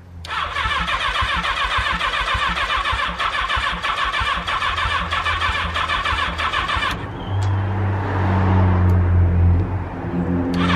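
1975 Honda CB550 four-cylinder engine cranked on its electric starter for about seven seconds, a steady starter whine with even compression pulses: a first start attempt after a carburettor rebuild. The starter then cuts off and the engine fires and runs on its own for about two seconds with a deeper, louder note, dropping away near the end.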